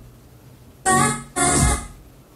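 Two short snatches of organ-like keyboard music, each about half a second, from the Yamaha CR-2020 receiver's FM tuner as the tuning dial is turned across stations, the sound dropping to quiet before and after them.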